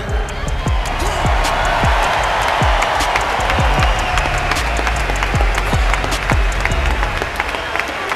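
Large arena crowd applauding and cheering in a steady wash of clapping, with music from the venue's sound system and deep bass beats underneath.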